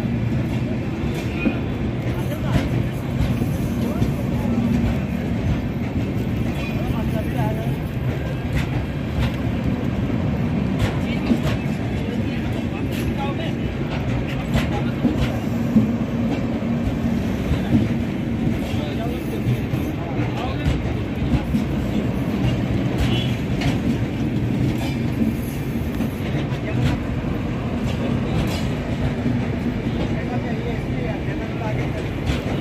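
Indian Railways LHB passenger coaches rolling past: a steady rumble of steel wheels on the rails, with irregular clicks and clacks as the wheels cross rail joints.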